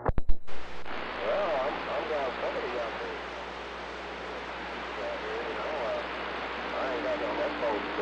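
A few sharp clicks at the start, then a CB radio receiver hissing with static, with a weak voice from a distant station faintly coming through the noise.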